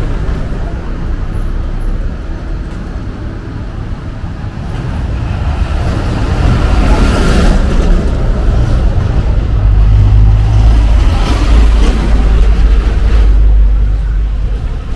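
City street traffic: motor vehicles passing, a steady engine and tyre rumble that grows louder about halfway through.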